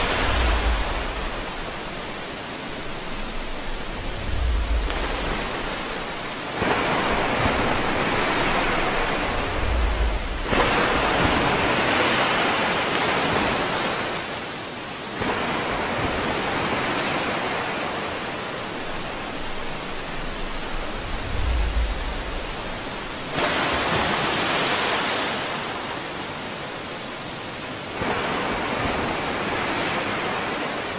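Steady rush of a waterfall pouring into a pool. Its level and tone shift abruptly every few seconds, and there are a few brief low thuds.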